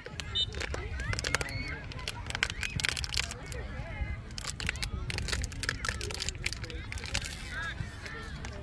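Wind rumbling on the microphone, with distant voices of players and spectators calling out and scattered sharp clicks.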